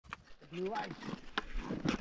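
A man's low, quiet vocal sound with a wavering pitch, lasting about half a second, followed by a few faint clicks.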